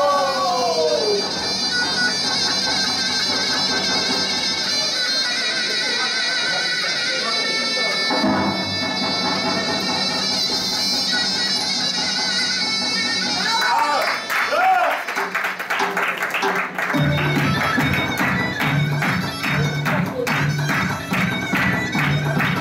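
Turkish folk dance music led by a reedy wind instrument playing an ornamented melody over a held drone. About 14 s in it moves into a faster section with a steady beat and a low drum pulse.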